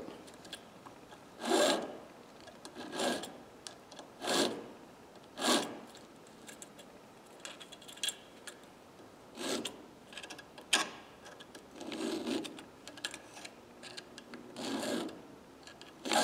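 Hand file scraping across a steel screwdriver tip held in a bench vise: about eight separate strokes, one every second or so, with a pause in the middle. A couple of swipes on each facet to dress up a broken tip that has been reshaped.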